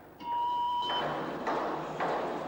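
A steady electronic test tone on one pitch, lasting under a second, then a loud rushing hiss that swells about halfway through.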